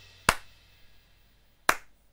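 Two sharp, isolated snaps or clicks, about a second and a half apart, with near quiet between them.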